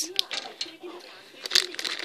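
Foil blind-bag packet crinkling as it is handled, with a short run of sharp crinkles near the end.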